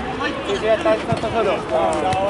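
Indistinct voices calling out and talking on the pitch during a football match, with a short knock about a second in.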